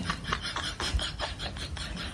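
Rhythmic rasping of a clothed body rubbing against a tree's bark, about five scratchy strokes a second.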